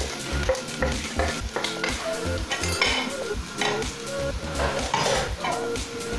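A metal spoon scraping and knocking against a metal pot, stirring spice powder into onions and green chillies that sizzle as they fry, in short irregular strokes.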